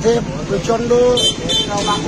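A man talking in Bengali over steady street traffic noise, with a thin high tone, like a distant horn, coming and going from about a second in.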